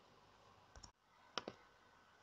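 Near silence broken by a few faint, short clicks: two just before a second in and a pair about one and a half seconds in.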